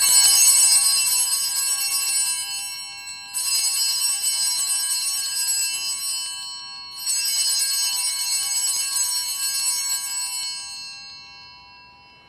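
Altar bells (Sanctus bells) rung three times, each a bright shimmering peal of several bells lasting about three seconds, the last dying away near the end. They mark the consecration and elevation of the host at Mass.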